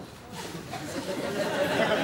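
Studio audience laughter, swelling from about half a second in to a loud, many-voiced laugh.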